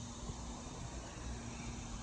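Steady outdoor background noise of distant road traffic: a low rumble and hiss with a faint steady hum.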